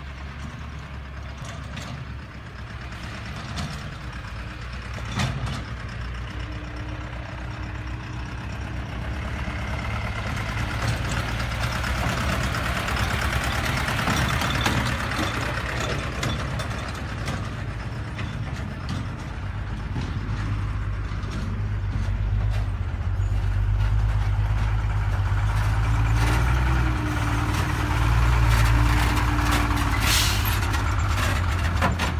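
Dump truck engines running as the trucks drive past on a dirt track, with tyre and road noise. The sound grows steadily louder and is loudest near the end, as a heavy dump truck passes close by.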